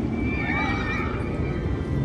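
Riders screaming on a Fury 325 steel giga coaster train, several high wavering cries overlapping about half a second in, over the train's steady low rumble on the track.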